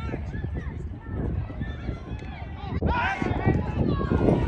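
Players' voices calling and shouting across a football pitch, over low thuds of running and play; about three seconds in a cut brings louder, closer shouts.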